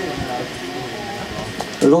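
Indistinct voices of people talking, with a steady hiss of background noise.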